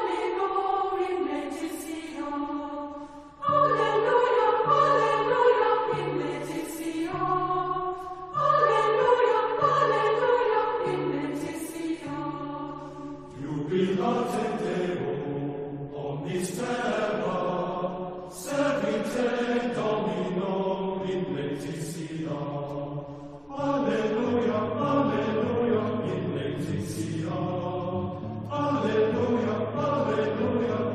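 Choir singing a sacred chant in phrases of about five seconds each, with low held notes underneath.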